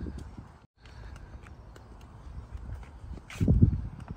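Footsteps on a concrete sidewalk while walking with a handheld camera, over low rumble on the microphone. The sound drops out briefly just under a second in, and a louder burst of noise comes about three and a half seconds in.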